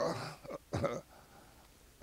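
A man clearing his throat, in two short bursts within the first second, followed by a pause with only faint room tone.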